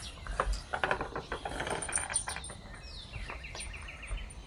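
Small metallic clicks and rattles of retractable dog leashes being handled and reeled in, the leashes not winding up properly, through the first two to three seconds. A bird trills in the background near the end.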